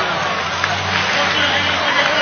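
Stadium crowd hubbub: many voices mixed into a dense, steady din, with a low steady drone underneath from about half a second in until near the end.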